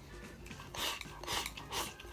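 Chopsticks shovelling rice from a bowl held at the mouth: three short raspy scraping strokes about half a second apart, in the second half.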